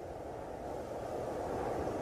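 A cold-wind sound effect playing back: a steady low rushing wind noise that grows gradually louder as the track's gain is turned up.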